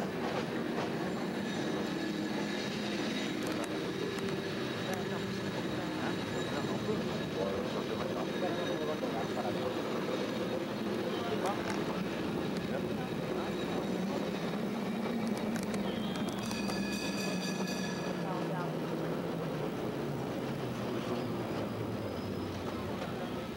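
San Francisco cable car running along its street rails: a steady rumble and clatter from the car and track. About three-quarters of the way in, the car's bell is rung briefly.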